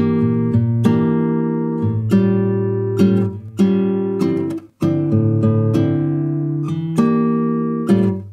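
Solo acoustic guitar playing a song's intro: chords struck about once a second and left to ring, with no voice.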